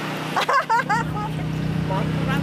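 Brief voices about half a second in, over a steady low hum.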